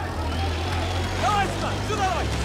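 Steady low rumble of a motor vehicle's engine, with shouting voices over it from about a second in.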